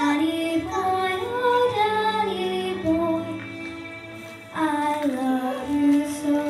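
A young girl singing a solo into a handheld microphone, holding long notes; her voice drops out briefly about four seconds in, then comes back in.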